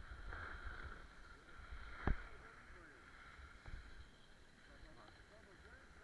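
Wind rumbling on the microphone and skis hissing and scraping over packed snow during a downhill run, with one sharp knock about two seconds in.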